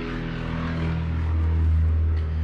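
Steady low mechanical hum from an engine or large motor, with several overtones, growing a little louder.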